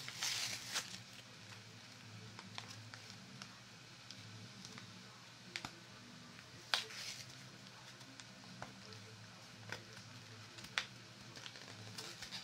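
Foil trading-card booster pack wrapper crinkling as it is torn open and handled, with a brief burst of crinkling at the start and a few faint, sharp crackles scattered after it.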